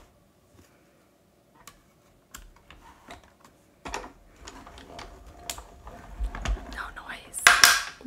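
Cutting plates being pressed through a manual die-cutting machine's rollers: a run of irregular clicks and creaks that builds after a couple of seconds, ending in a loud crackling creak. The creak is the plates themselves under pressure, a creaky-door sound.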